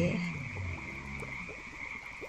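Background ambience of a frog chorus, a steady high-pitched drone under a quiet pause.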